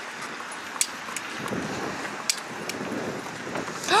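Steady outdoor background noise with wind on the microphone, and a few faint clicks.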